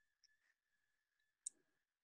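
Near silence with a faint, steady high tone and a single short click about one and a half seconds in.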